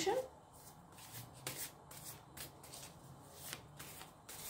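Tarot deck shuffled by hand: a run of quiet, irregular card clicks and rustles as cards are passed from one hand to the other.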